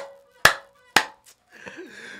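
A man clapping his hands while laughing: two sharp claps about half a second apart, then a faint third, and a faint voiced laugh near the end.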